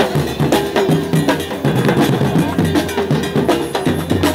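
Live drumming by a drum troupe on stage: loud, fast rhythmic beating with sharp, dense strikes and a steady low tone underneath.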